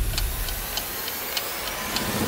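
Ticking-clock sound effect counting down a quiz timer, with short separate ticks and the backing music dropped out.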